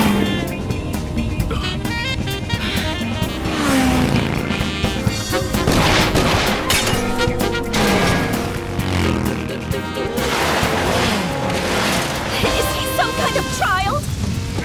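Chase music with motorcycle engines revving and tyres skidding over it, and several sudden crashes.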